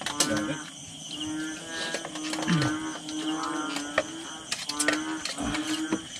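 Bullfrogs calling: a low note repeated in short runs of about half a second to a second, over a steady high insect drone.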